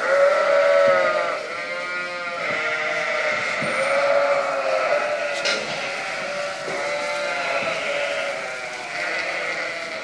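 A flock of ewes and lambs bleating, many calls overlapping one after another without a break, loudest in the first second.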